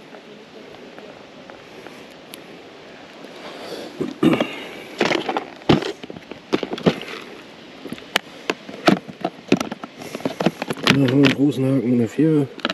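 Fishing tackle handled while the bead and lure are changed: a run of sharp clicks and light knocks with rustling, starting about four seconds in.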